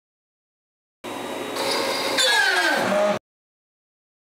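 A 1.2 kW CNC router spindle running at 18,000 RPM, cutting wood with a 1/4-inch two-flute upcut end mill at half-inch depth. Partway through, after a sharp click, its whine falls steadily in pitch as the spindle bogs down under the load: the spindle failing the cut. The sound starts and stops abruptly.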